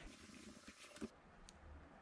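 Near silence: room tone, with one faint click about halfway through.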